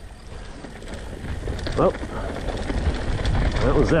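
Wind buffeting an action camera's microphone and the low rumble of a mountain bike rolling down a gravel path, growing louder as the bike picks up speed. A short vocal sound comes about two seconds in, and speech starts near the end.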